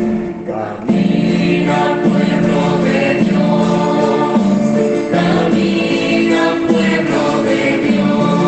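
Christian choral music: a choir singing over instrumental backing. The music briefly dips in level just under a second in, then the singing carries on steadily.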